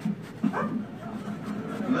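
A dog making a brief call that rises and then falls in pitch, about half a second in.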